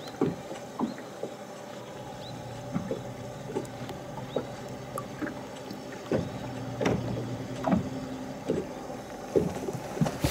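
Small-boat sounds on still water: light slaps and knocks of water against the hull about once a second, over a low steady electric hum, likely the Garmin Force trolling motor holding the boat in anchor mode, that swells about six seconds in.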